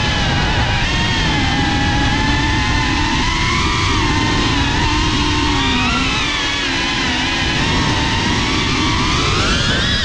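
FPV racing quadcopter's motors whining, their pitch rising and falling with the throttle and climbing near the end, with wind rushing over the onboard camera's microphone.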